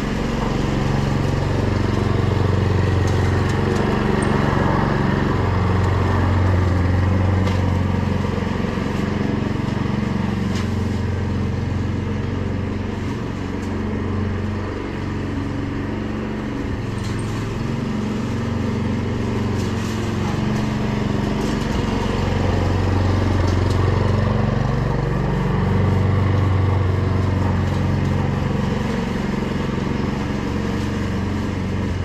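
Petrol walk-behind lawn mower engine running steadily under load while cutting grass. It is louder as the mower passes close, fades as it moves away midway through, then grows louder again near the end.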